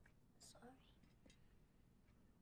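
Near silence: quiet room tone, with one faint whispered word about half a second in.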